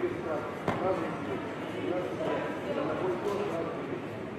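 Indistinct voices calling out in a large hall, with one sharp smack of a kickboxing strike landing under a second in.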